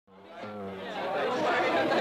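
Audience chatter in a club before a band plays, rising steadily from silence as the recording fades in, with a steady low tone in the first second.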